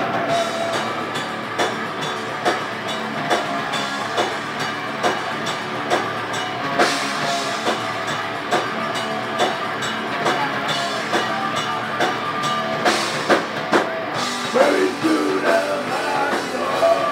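Thrash/death metal band playing live, an instrumental passage of heavily distorted electric guitars over a drum kit. The drums give sharp accented hits at a steady pace of a little over one a second, with a quicker run of hits about three quarters of the way through.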